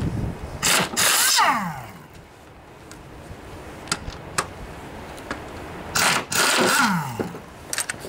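Air impact wrench running in short bursts on the mower's engine mount bolts, its whine falling away as it spins down after each burst: a couple of bursts about a second in and another about six seconds in.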